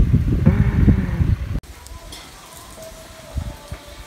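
Wind rumbling on the microphone outdoors, with faint voices under it, cut off abruptly about a second and a half in; after that there is only a much quieter background with a faint steady tone.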